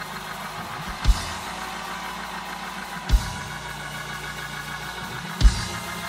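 Church band music under a praise break: held organ or keyboard chords over a bass line, with a deep drum hit about every two seconds.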